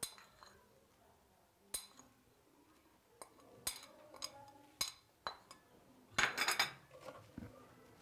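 A small spoon clinking and tapping against a porcelain bowl as dried spice is scraped out into a mixing bowl of flour: several separate ringing clinks spread out, with a louder clatter lasting about half a second near the end.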